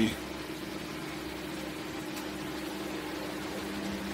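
A steady low hum with two constant tones and a faint hiss behind it, the background noise of the room.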